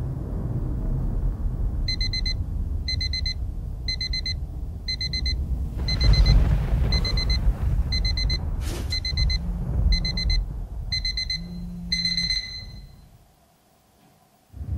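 Electronic alarm clock beeping in quick clusters of high pips, roughly two clusters a second, over a low rumble. The beeping stops about twelve seconds in and the sound then drops out entirely.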